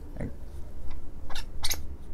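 A Delrin chassis being pushed and worked into a lightsaber hilt, with a couple of sharp clicks about one and a half seconds in as it seats. A short, low vocal sound comes near the start.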